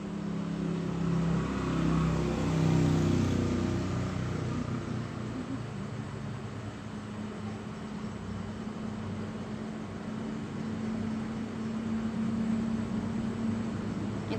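Electric sewing machine motor running while a zipper is stitched onto fabric, a low hum whose pitch shifts over the first few seconds and then holds steady.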